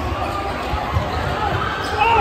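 A basketball dribbled on a hardwood gym floor, a few bounces near the middle, under the shouts and voices of a crowd in a large gym.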